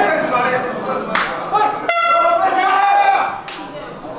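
A horn sounds once for a little over a second, a steady high tone, signalling the start of the round. It is framed by two sharp cracks, with voices in the background.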